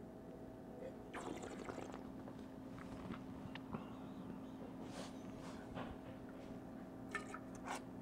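Faint sounds of wine being sipped and worked around in the mouth during tasting, with a small knock about halfway through as the wine glass touches the table, over a steady faint hum.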